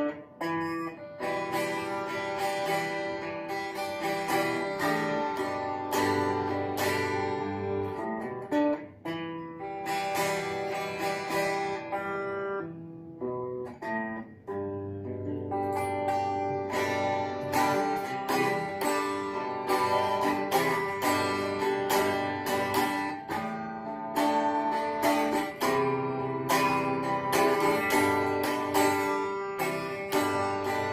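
Semi-hollow-body electric guitar played solo, picked single notes and strummed chords in a continuous instrumental passage, with brief pauses about nine and fourteen seconds in.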